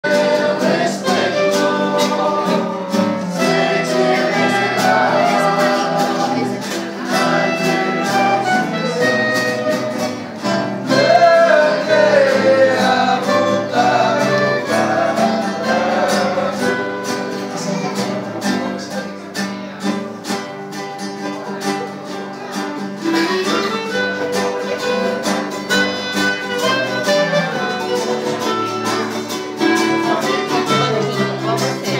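Clarinet, bass clarinet and acoustic guitars playing a hymn together, with voices singing along.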